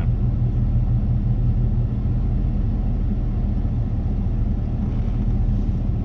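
Steady low rumble of a car's running engine heard from inside the cabin, even and unchanging throughout.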